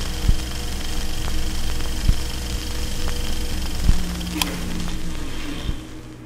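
Sound-design music for a logo sting: a dense, noisy, crackling bed with steady tones and a deep low thud about every two seconds, and one sharp crack a little past four seconds in.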